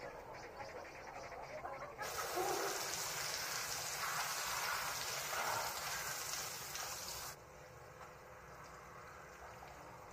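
Shower spray running, water pouring down onto a person standing under it. It starts suddenly about two seconds in and cuts off abruptly about seven seconds in.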